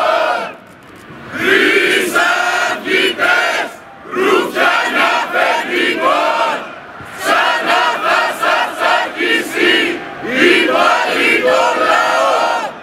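A marching crowd of protesters chanting a slogan in unison. The chant comes in repeated phrases of about two and a half seconds, with short breaks between them.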